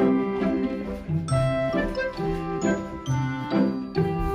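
Light, tinkling background music: a chime-like melody over bass notes, with notes changing about every half second.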